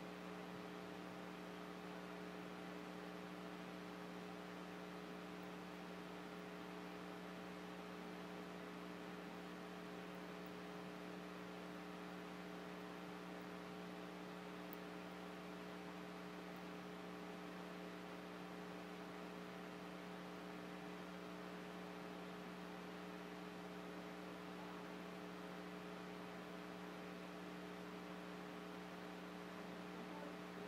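Steady electrical mains hum: a low, even buzz of several fixed tones, unchanging throughout, with nothing else heard.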